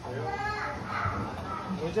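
A young child's high-pitched voice talking, the words not clear, with faint room chatter behind it.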